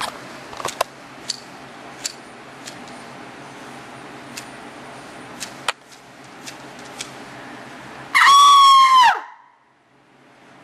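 A man's loud, high-pitched scream lasting about a second, near the end, falling in pitch as it dies away. Before it, low steady background noise with scattered sharp clicks.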